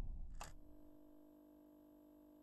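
The tail of studio applause fading out, a single short swish-like burst from the RTÉ Player logo ident about half a second in, then near silence.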